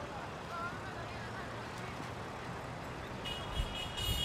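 Outdoor background of distant voices, then a referee's whistle blown once near the end, a steady shrill blast a little under a second long.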